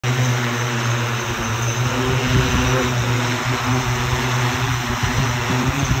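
Yangda Sky Whale electric VTOL drone's propellers running steadily under multi-rotor power: a loud, even drone with a constant low hum under a wide rush of propeller noise.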